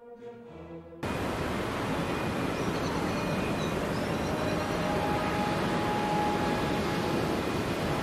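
Soft orchestral music ends and, about a second in, a steady wide roar of outdoor ambient noise cuts in suddenly, with faint high chirps over it.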